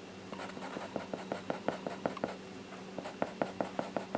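Felt-tip marker dabbing quick short strokes on paper while colouring in: a run of light scratchy ticks, about five a second, with a short pause past the middle before a second run.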